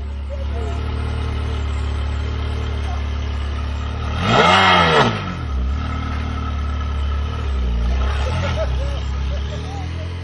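Ferrari V8 engine idling. About four seconds in it is revved once sharply, its pitch rising and falling back within about a second, the loudest moment. Near the end it gets a couple of lighter throttle blips.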